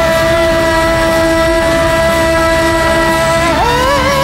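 Song's electric guitar lead holding one long steady note over the accompaniment, then bending up near the end into a wavering vibrato note.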